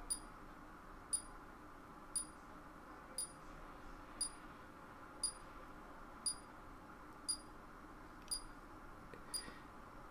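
Faint, short high-pitched ticks, evenly spaced at about one a second, over a low room hum.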